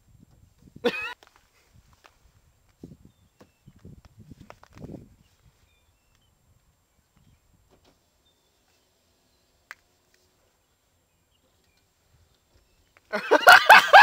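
A brief loud vocal noise from a person about a second in, then near quiet with a few faint small sounds and a single click, before loud laughter breaks out near the end.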